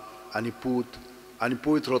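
A man's voice speaking the closing blessing of the Mass in Konkani into a microphone, in short phrases with pauses.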